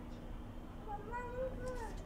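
A faint single high-pitched call, about a second long, that rises and then falls in pitch, starting about a second in, over a low steady hum.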